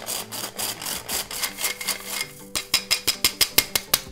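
Hand-crank metal flour sifter being turned, its wire agitator scraping flour through the mesh in quick rhythmic rasping strokes. The strokes grow louder and more distinct about two and a half seconds in.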